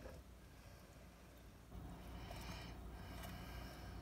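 Drained canned corn kernels sliding out of a tilted can into a mixing bowl of ground beef and beans: a faint, soft pattering that picks up a little under two seconds in.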